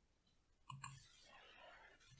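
Near silence broken by two faint mouth clicks from the reader about two-thirds of a second in.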